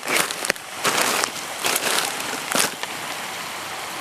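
Irregular footsteps on a dry, leaf-strewn dirt trail, several short steps in the first three seconds, over the steady rush of a mountain creek.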